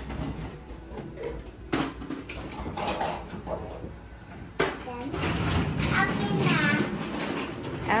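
Talking, faint at first and louder in the last three seconds. Sharp knocks come about two seconds and four and a half seconds in, from plastic toy food and a toy shopping cart being handled.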